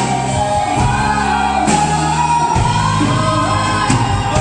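Live band playing a pop-rock cover: a woman sings long held notes into a microphone over electric guitar, bass guitar and drums, all amplified through the PA.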